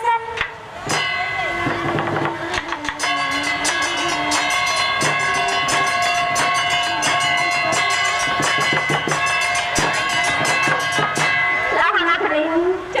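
Instrumental interlude of a lakhon basak (Khmer Bassac opera) ensemble: drums beating under sustained melody lines. It starts about a second in, after a sung phrase ends, and runs until singing resumes at the end.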